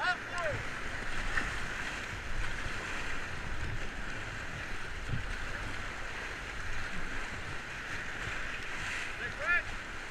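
Whitewater rapids rushing steadily around a paddle raft: a continuous hiss of churning, breaking river water with a low rumble underneath.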